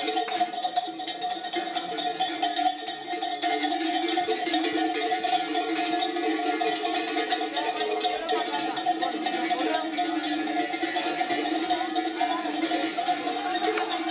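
Large bells clanging without a break, their ringing tones held steady under fast metallic clatter, with crowd voices around them.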